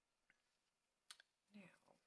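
Near silence: room tone with a few faint clicks, the sharpest a little after one second, followed near the end by the start of a woman's spoken word.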